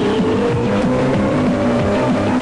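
Opening theme music with an engine-like sound over a steady beat, one tone rising slowly in pitch like a motor revving up.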